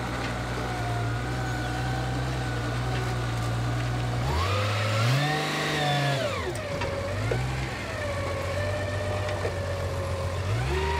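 Diesel truck engine idling, revved up about four seconds in and held for about two seconds before dropping back to idle, with one short blip of the throttle after.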